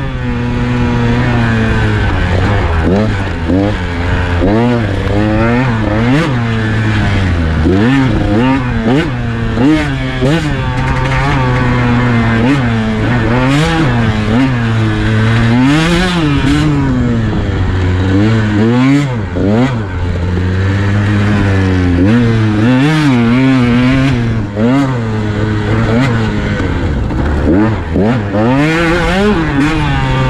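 A KTM 150 XC-W's single-cylinder two-stroke engine being ridden on a dirt trail, revving up and dropping back over and over as the throttle is opened and closed, its pitch rising and falling every second or two.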